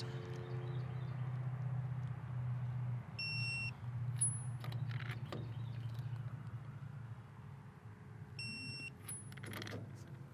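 Wheel nuts being tightened with a torque wrench whose electronic beeper sounds twice, about five seconds apart, each time the set torque of 120 N·m is reached. Metallic clicks of the wrench and socket follow each beep, over a steady low hum.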